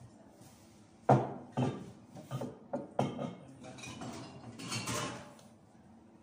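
Drink cans, bottles and snack packs being handled and set down on wooden display shelves: a series of knocks and clinks, the loudest a little over a second in, then a longer rattling clatter near the end.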